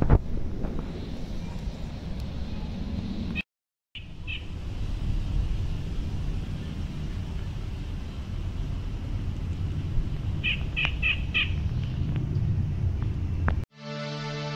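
Outdoor ambience with wind rumbling on the microphone. Near the end comes a quick run of about four short bird chirps. The sound cuts out for half a second a few seconds in.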